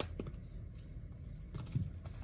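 A few soft clicks of the small plastic push-buttons on top of a digital alarm clock being pressed to change the display colour: one near the start, a few more near the end.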